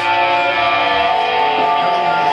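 Loud live noise music: a steady drone of held, layered tones.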